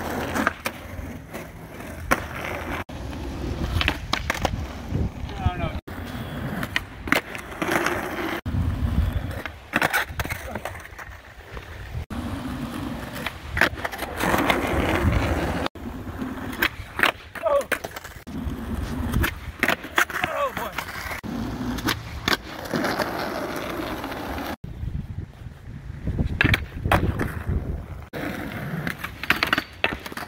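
Skateboard wheels rolling on rough asphalt and concrete, with repeated sharp clacks from the board popping, landing and hitting ledges. Several separate takes follow one another, the sound cutting off and restarting abruptly.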